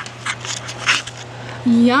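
A few short scraping, rustling noises, then near the end a woman's voice says a long, drawn-out "Yum!" that rises and slowly falls in pitch. A faint steady electrical hum sits underneath.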